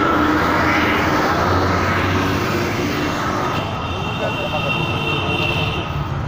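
Busy roadside traffic noise, a dense steady rumble of engines with voices mixed in, and a high held tone over the last couple of seconds.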